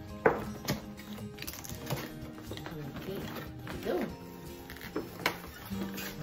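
Background music with steady held notes, over scattered clicks, taps and scrapes of hands and a knife working at a cardboard box to open it.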